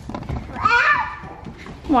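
A toddler's short, high-pitched vocalization, followed near the end by a woman's rising "What?".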